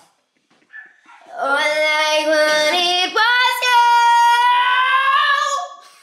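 A woman singing a line of long held notes that steps up in pitch twice, ending on a high note held for over two seconds.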